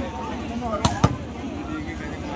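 Two sharp smacks of a volleyball being struck, about a fifth of a second apart, a little under a second in, over steady crowd chatter.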